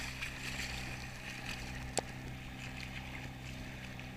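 A boat running across choppy open water, its hull slapping and splashing through the waves, with a steady low engine hum underneath. A single sharp click about two seconds in.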